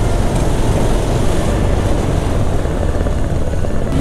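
Motorcycle riding along at steady road speed: a continuous low rumble of engine and wind rush on the rider's microphone.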